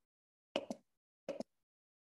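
Two pairs of short, sharp taps, about half a second and about a second and a quarter in, each dying away within a fraction of a second into dead silence.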